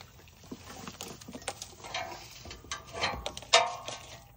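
Irregular light clicks, taps and scraping of hand-tool and metal handling noise, with a sharper click about three and a half seconds in.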